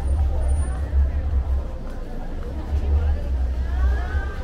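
Night city street ambience: indistinct voices of passersby and car traffic over a steady low rumble.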